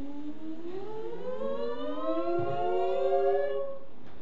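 A slow rising siren-like glide of several tones together, climbing for about three and a half seconds and stopping shortly before the end.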